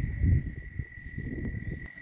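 Uneven low rumbling on the microphone of a handheld camera being moved, louder in the first half-second, with a faint steady high-pitched tone running underneath.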